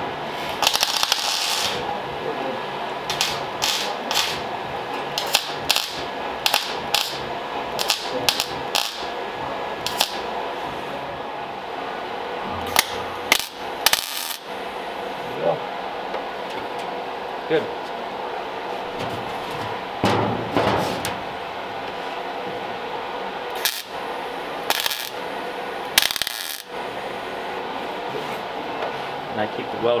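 Short, irregular bursts of MIG welding crackle as a sheet-steel floor panel is tack-welded in place, with sharp clicks and knocks between them over a steady hum.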